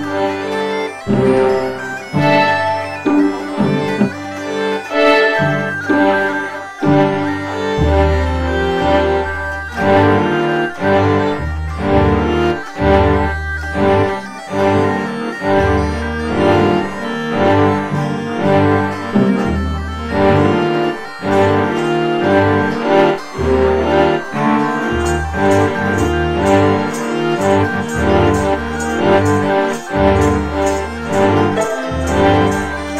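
A bagpipe and a small plucked lute-type string instrument playing a lively tune together, with lower bass notes joining about eight seconds in.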